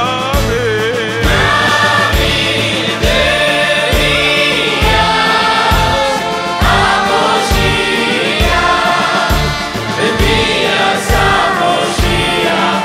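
A male lead singer and a choir singing together in harmony over a live band, with a steady beat.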